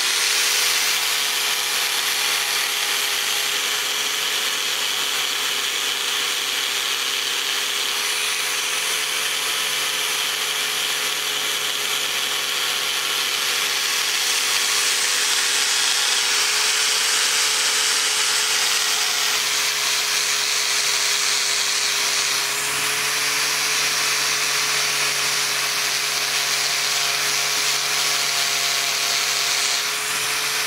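Angle grinder with a polishing wheel running steadily against an aluminium knife blade, buffing it: a steady motor whine under the hiss of the wheel rubbing the metal.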